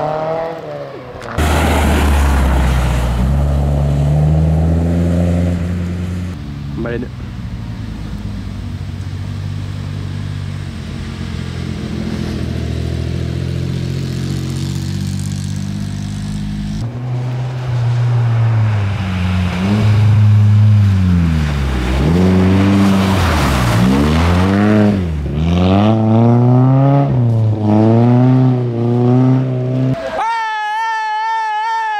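Historic rally car engines on a special stage. First an engine accelerates hard, its pitch climbing in steps through the gears. After a cut, an engine revs up and down rapidly, again and again.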